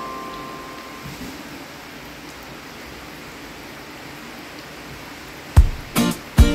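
Samosas deep-frying in a wok of hot oil: a steady sizzle. A fading music note trails off in the first second, and a strummed guitar starts near the end.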